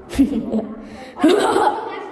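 A person's voice chuckling and talking, with a short sound just after the start and a longer laugh-and-speech stretch from just past halfway.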